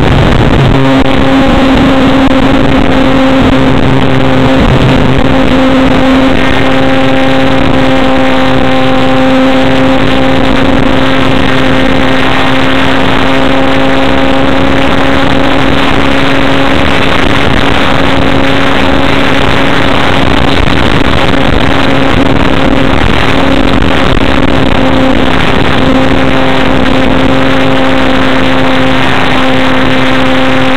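Model airplane's motor and propeller heard from a camera on board: a loud, steady drone holding one pitch, over a heavy rush of wind noise.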